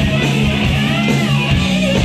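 Rock band playing live, loud and continuous, with electric guitar to the fore over sustained low notes. Midway through, a note bends up and back down.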